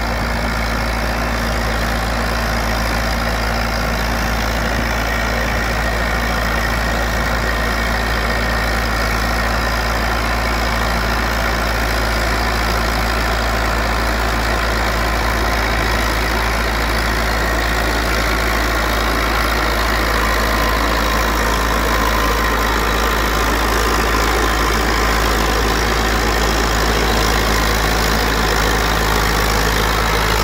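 IMT 577 DV tractor's diesel engine running steadily while pulling a three-shank subsoiler through the field, growing slightly louder as it comes closer.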